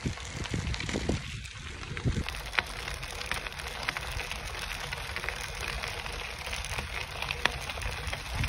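Catrike recumbent trike rolling along a gravel trail: a steady crunch of tyres on loose stone, sprinkled with small irregular ticks and crackles.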